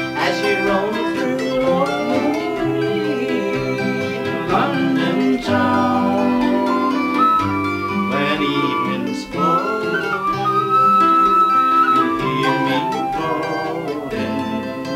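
Instrumental break in an Irish folk song: a tin whistle plays the melody over a strummed acoustic guitar and a small plucked string instrument, with no singing.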